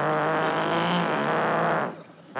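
A man's mouth-made imitation of a long, rumbling fart into a stage microphone, a steady buzz that cuts off shortly before the end: it stands for bowels letting go in his trousers.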